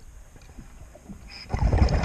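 Heard underwater: a scuba diver's exhaled bubbles gushing out of the regulator, loud and low, starting about three-quarters of the way in. Before that, only faint clicks and crackles.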